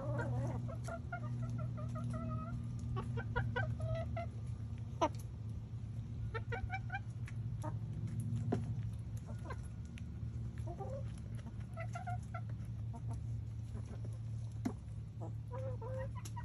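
A flock of backyard hens clucking repeatedly as they feed on pumpkin, short pitched calls coming one after another throughout. A few sharp taps stand out, and a steady low hum runs underneath.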